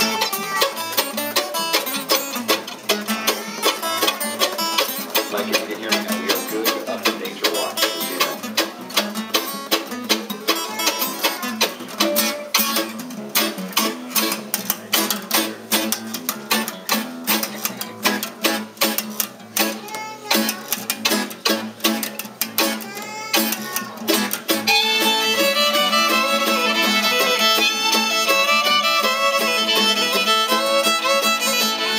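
Live bluegrass string band: mandolin and acoustic guitar picking a quick, even rhythm. About three-quarters of the way through, the fiddle comes in with a bowed melody over them.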